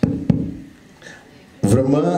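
Two thumps of a handheld microphone being handled as it is passed from one person to another, the second about a third of a second after the first.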